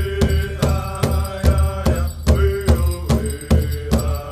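Powwow drum song: a group of singers holding long chanted notes over a big drum struck in a steady, even beat, about two and a half beats a second.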